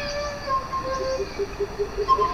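A small end-blown flute playing held notes, then a low note repeated rapidly, about five times a second, from about halfway through. Short high chirps sound faintly behind it.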